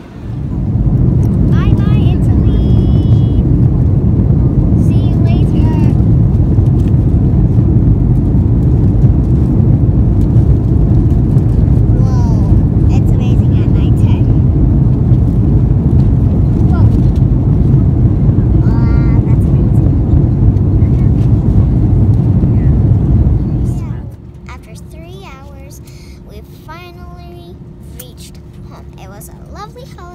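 Loud, steady low rumble of jet engines and airflow inside an airliner cabin, with faint voices over it. It cuts off suddenly about 24 seconds in, leaving a quieter cabin hum with a steady tone and a child talking.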